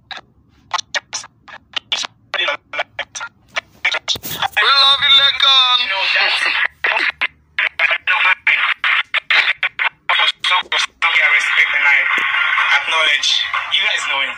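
Speech that keeps cutting in and out many times a second, with a stretch of unbroken voice about halfway through and steadier sound near the end.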